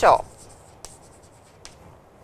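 Chalk writing on a chalkboard: faint scratching with two sharp ticks of the chalk about a second apart. A voice trails off right at the start.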